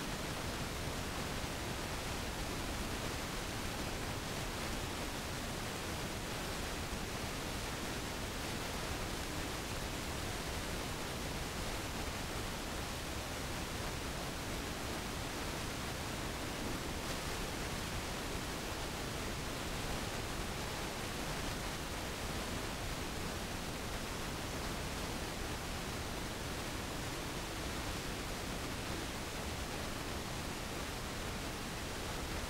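Steady, even rushing noise with no breaks and no distinct sounds standing out.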